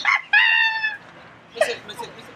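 A rooster crowing once: one short, slightly falling call about half a second long.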